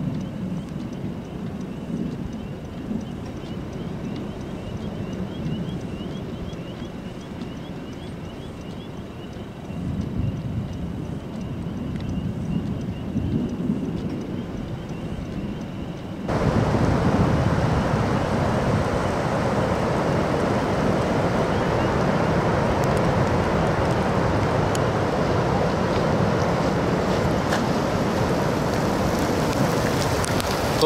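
Wind buffeting the microphone with a low rumble, with faint repeated high chirps in the first few seconds. About 16 seconds in it cuts suddenly to a louder, steady roar of wind and heavy rain.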